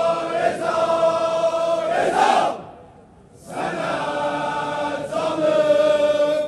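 Large crowd of men chanting an Azeri mourning elegy (mersiye) in unison, holding long sung notes. The chant breaks off for about a second near the middle, then starts again.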